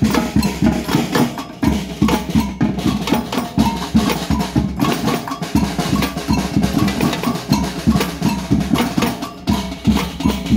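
A street drum band of protesters playing together: large bass drums and smaller, higher drums struck with sticks in a steady, driving rhythm.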